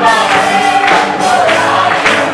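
A congregation singing a worship song together, led by voices on a microphone, with hand clapping and electric guitar accompaniment.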